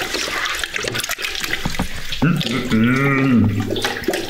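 Liquid sloshing and swirling as a long spoon stirs mead must in a plastic fermenter bucket, with small knocks of the spoon against the bucket. About two seconds in, a man's drawn-out voice joins it, rising and then falling in pitch.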